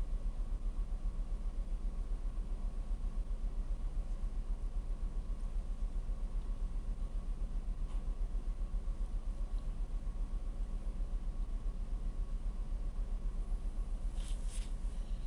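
Steady low drone of a ship's engine-room machinery, with a faint constant hum above it.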